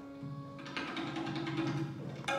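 Sikh kirtan accompaniment: a held harmonium chord dies away within the first half second, and tabla strokes carry on through the rest.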